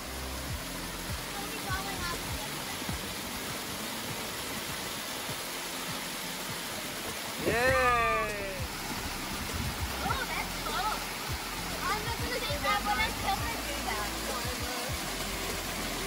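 Water from a small cascade pouring steadily over rock into a shallow pool. About halfway through there is a loud, high child's squeal that rises then falls, followed a couple of seconds later by shorter squeals and voices.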